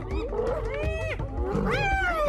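Hyenas calling: a run of high-pitched cries that rise and fall in pitch, with longer drawn-out ones about a second in and near the end.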